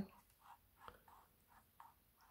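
Faint, soft brushing: a dry mop brush swept lightly back and forth over a painted canvas, a few soft strokes a second.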